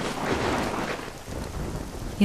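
Heavy rain falling, with a roll of thunder that swells in the first second and then fades.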